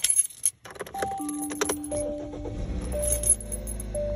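Keys jangling and clicking inside a car. A low rumble builds through the second half.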